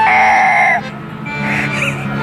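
A young boy crying: one long loud wail that breaks off just under a second in, then softer sobbing, with background music underneath.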